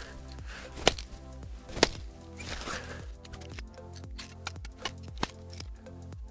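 Steel blade of a folding tactical shovel chopping a wet stick of wood: two sharp chops about a second apart in the first two seconds, then a few fainter knocks, over background music.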